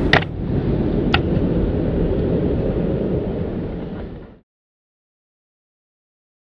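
Steady low outdoor rumble with a sharp click at the start and another about a second later. It fades and cuts to silence about four and a half seconds in.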